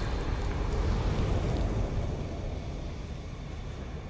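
The tail of an animated logo sting's sound effect: a low rumbling, hissy noise that fades away gradually.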